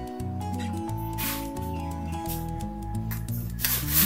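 Background music of steady held notes. Over it come two brief scraping rubs, about a second in and again near the end, as a spoon scrapes chilli powder out of a small bowl.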